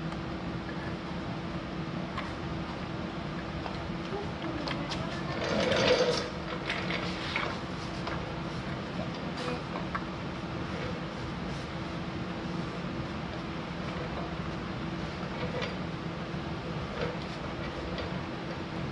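A steady machine hum, with scattered light clicks and knocks from a plastic trailer light housing and its wires being handled, and a louder clatter about six seconds in.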